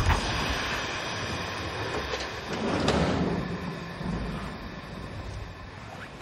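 A sharp hit as something is yanked, then a long rumbling, rushing noise that swells again about three seconds in and fades.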